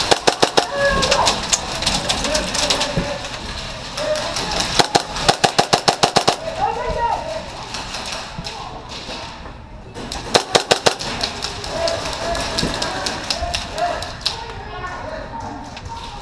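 Gas blowback airsoft submachine gun (KWA MP7) firing several short bursts of rapid fire, with distant shouting voices between the bursts.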